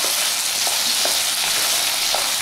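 Diced potatoes sizzling steadily in hot oil in a non-stick frying pan, just added all in one go, while a wooden spatula stirs them and now and then lightly ticks against the pan.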